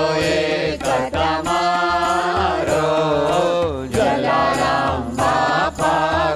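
Hindu devotional chanting sung to music: a singing voice with gliding, ornamented pitch over a steady low drone, with occasional percussion strikes.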